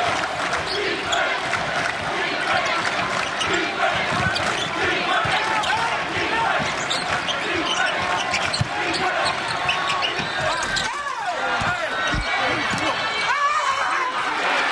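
Arena crowd noise of many voices over a basketball being dribbled on a hardwood court. Near the end come several short rising squeaks, typical of sneakers on the court as players jostle in the lane.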